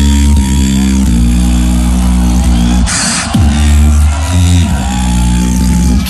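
A beatboxer's bass-heavy drop amplified through a PA: a deep sustained bass with downward pitch swoops into it, and a short hissing snare-like burst about three seconds in.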